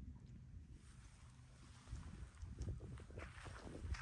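Quiet outdoor ambience with a low wind rumble on the microphone. Faint, irregular soft footsteps on dirt come in during the second half.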